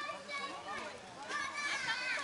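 Indistinct chatter of several people, with high-pitched children's voices, busiest in the second half.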